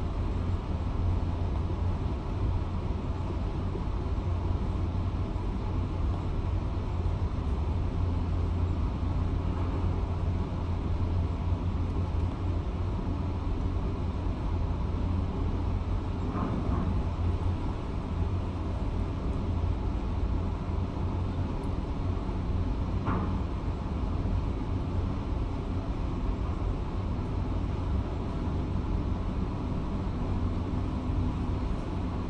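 Heavy demolition excavators running, a steady low diesel rumble muffled through office window glass, with two faint short sounds past the middle.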